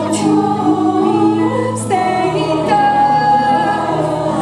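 Live concert music: a female choir singing held notes together, amplified through the PA, over sustained low chords that shift about one and two seconds in.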